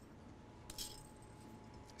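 Near silence, with one faint, brief metallic clink about three-quarters of a second in: a wire whisk touching a large stainless steel mixing bowl.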